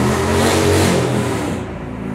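A motor vehicle driving past close by: its engine hum and tyre noise swell over the first second, then fade away about a second and a half in.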